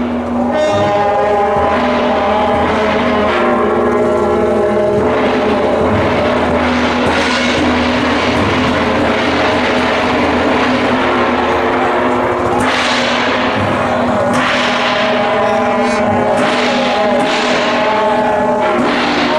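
Several shaojiao, the long brass horns of a Taiwanese temple procession, blown together in long overlapping drones at different pitches, the notes shifting several times.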